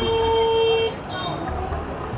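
A vehicle horn sounding one steady honk of just under a second, cutting off sharply, over the low rumble of street traffic.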